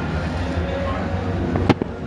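Steady stadium crowd murmur, with one sharp crack of a cricket bat striking the ball near the end.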